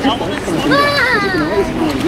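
Children's voices chattering and calling out, one high-pitched voice drawn out about a second in.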